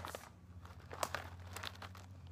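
Plastic snack bag of kettle potato chips crinkling as it is handled, with a few soft crackles.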